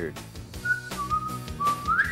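A person whistling a short tune: a brief higher note, then a longer lower note held steadily that slides upward at the end. Quiet background music plays underneath.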